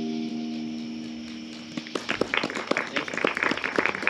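The last guitar chord of a song rings out and slowly fades, then about halfway through an audience starts applauding with quick, uneven claps.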